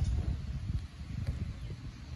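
Wind buffeting the microphone: a low, uneven rumble with no other clear sound over it.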